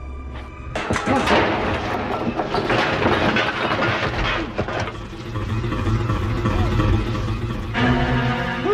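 Horror film soundtrack: a sudden loud crash under a second in, followed by about four seconds of clattering commotion over the score, which then settles into a low held note.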